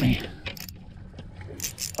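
Rustling and scraping handling noise close to the microphone, as a gloved hand works a spinning rod and reel, with a few short clicks near the end.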